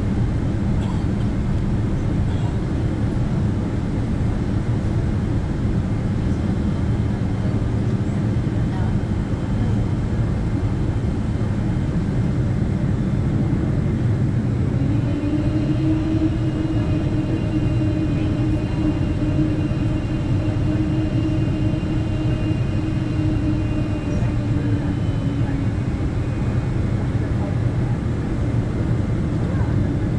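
Boeing 777-300 cabin noise while taxiing: a steady low rumble of the engines and airframe. About halfway in a steady hum joins it, and it dies away a few seconds before the end.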